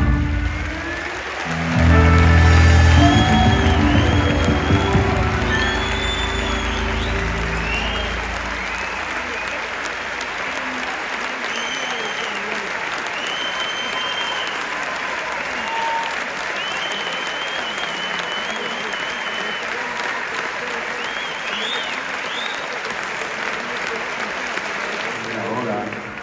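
A live band's last chord rings out and fades over the first several seconds. A concert audience applauds throughout, with sustained clapping and whistles here and there.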